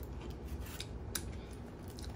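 A few faint clicks and crackles of fingers picking at food in a foam takeout box.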